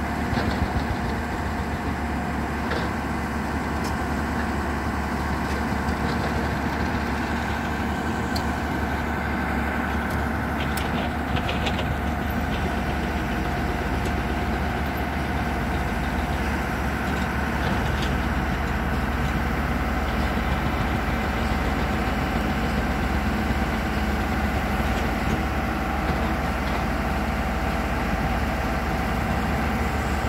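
Tata Hitachi 200 excavator's diesel engine running steadily under the machine's own power as it drives off a flatbed trailer, with a steady whine over the engine and a few short knocks about ten to twelve seconds in.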